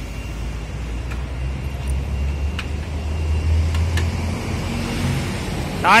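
A low vehicle rumble that swells in the middle and fades again, with a few light clicks as the side engine cover of an Iseki tractor is pushed shut.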